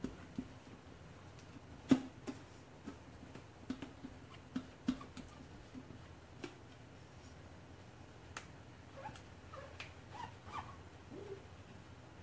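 Silicone spatula scraping and tapping in a stainless steel bowl of cheesecake batter: irregular light taps, the loudest about two seconds in, and short squeaks near the end.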